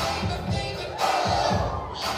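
Dance music with a heavy bass beat, and an audience shouting and cheering over it, loudest from about halfway through.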